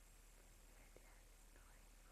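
Near silence: videotape hiss and room tone, with faint whispering starting about a second in.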